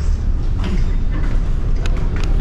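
Steady low rumble of a passenger ship's machinery, heard inside the ship, with a faint click near the end.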